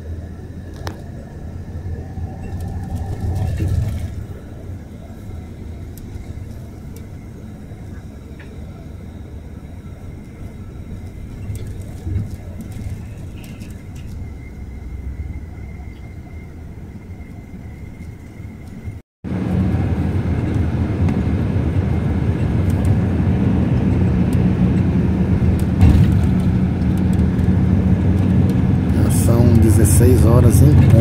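Engine hum and road rumble inside a coach bus cruising on a busy expressway. The sound cuts out for a moment about two-thirds of the way through, and after that the engine hum is louder and steadier.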